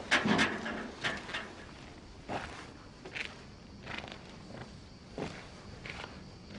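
A few irregular knocks and scuffs at uneven intervals, the loudest cluster in the first half-second, over a low background.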